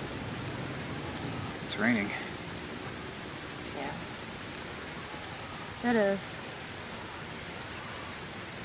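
Steady outdoor background hiss, with two brief wordless vocal sounds from a person, short hums or murmurs, about two seconds in and again about six seconds in.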